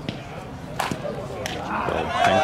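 A sharp crack of a slowpitch softball bat meeting the pitch about a second in, followed by a second, smaller crack about half a second later.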